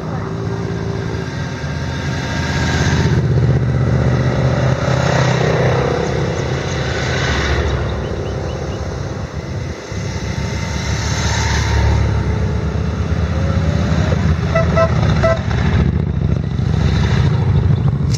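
A line of motorcycles riding past one after another. The engines swell and fade as each bike or group passes, about every four seconds.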